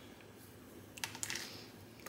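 A mini wooden clothespin is clipped onto the corner of a cardstock box, giving a few small, sharp clicks about a second in, with light handling of the paper.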